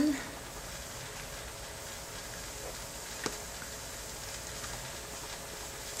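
Steady low hiss of room tone, with one small click a little past the middle.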